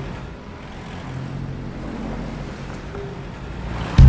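City street ambience: the steady hum of road traffic.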